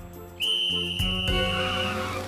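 A whistle blown in one long steady high blast, signalling the start of the contest, over background music, with a short knock about a second in.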